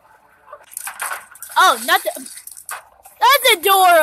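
High-pitched human yelling in two outbursts: a short one with the pitch swinging up and down about a second and a half in, then a longer, louder yell near the end that drops in pitch.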